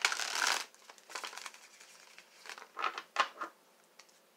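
Rustling of tarot cards being handled: a dense rustle at the start, then a few short, quieter brushes and slides.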